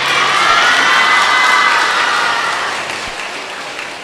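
Audience applauding and cheering, with mixed voices in the crowd; it swells in the first second and then slowly fades.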